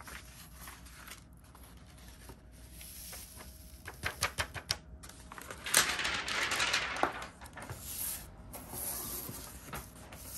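Sheets of paper being lifted, folded and slid together while loose glitter runs off them back into a jar: light rustling with a cluster of small taps about four seconds in, then a louder hissing rush of paper and glitter a couple of seconds later.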